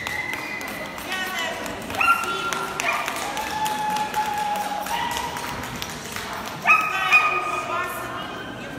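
A dog giving a run of high, drawn-out whining cries, each held on a steady pitch and starting suddenly, the loudest pair near the end, over the murmur of voices in a large hall.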